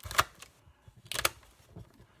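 Polaroid Spectra SE camera's plastic film door being pushed shut over a loaded film cartridge: two sharp clicks about a second apart, the first the louder.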